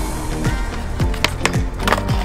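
Music with deep bass notes sliding down in pitch about every half second, over skateboard wheels rolling on concrete. A sharp clack comes near the end as the board meets a low flat rail.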